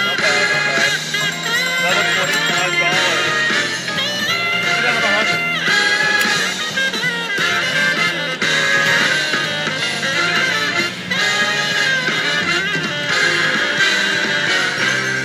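WMS Super Monopoly Money video slot machine playing its free-spins bonus music while the reels spin, loud and steady.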